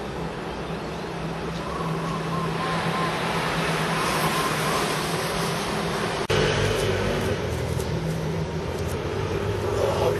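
Steady hum of city traffic with a faint low drone under it. About six seconds in, the sound breaks off abruptly and a louder low hum takes over.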